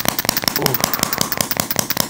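A rapid, continuous run of sharp clicks, about fifteen a second, from a handheld chiropractic adjusting instrument being applied at the first rib.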